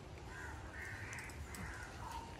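Crows cawing: about three harsh caws in quick succession, heard faintly over a low steady rumble.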